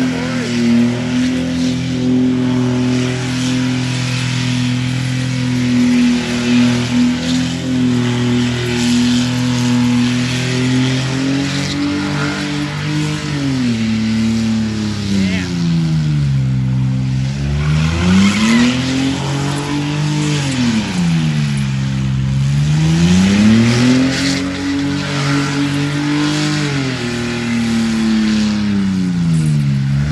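A Holden Commodore sedan's engine is held at steady high revs during a smoky tyre-spinning burnout. About twelve seconds in, the revs start swinging, dropping low and climbing back up three times.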